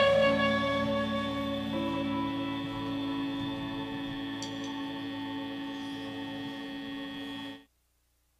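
A live indie rock band's last chord ringing out as held, steady tones with no beat, slowly fading. It is cut off suddenly near the end.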